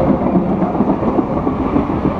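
Steady low rumble of a heavy vehicle passing in the street.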